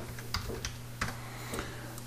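Computer keyboard keys clicking in a few scattered, separate taps over a faint steady low hum.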